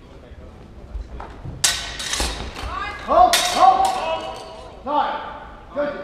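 Steel training longswords clashing. There is a bright ringing strike about a second and a half in and another about three seconds in. Several sharp shouts follow through the exchange.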